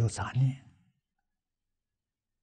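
A man's voice speaking for well under a second, then cutting off into dead silence.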